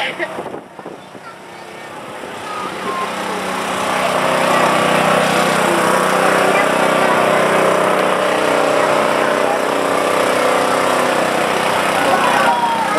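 A small engine, likely the portable generator that powers the float's lights, running steadily. It grows louder over the first few seconds as the float comes close, then holds steady, with voices of the crowd alongside.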